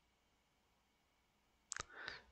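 Near silence, with a brief click near the end, just before the narrator speaks again.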